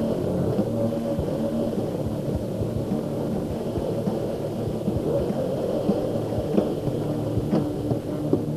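Stage amplifiers and PA humming steadily with no song playing, over a low rumble and a few scattered knocks.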